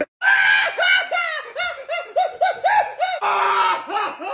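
A young man's exaggerated, high-pitched comedic sobbing: a quick run of short sob pulses, about four a second, breaking into a drawn-out wail near the end.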